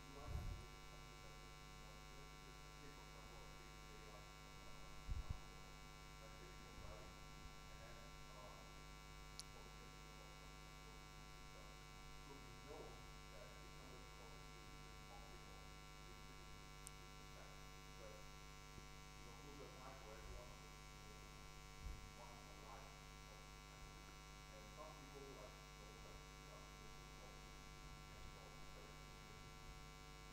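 Near silence under a steady electrical mains hum, with a faint off-microphone voice talking underneath, most likely an audience member asking a question. A couple of soft low thumps come about five seconds in and again past twenty seconds.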